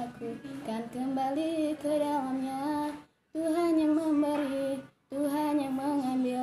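A young woman singing an Indonesian Bible-verse song alone, a single voice holding and moving between notes in a simple melody. The singing cuts to dead silence twice, briefly, once about halfway through and once near the end.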